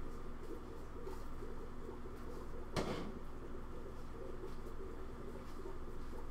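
Steady low hum of room noise with one sharp knock a little under three seconds in.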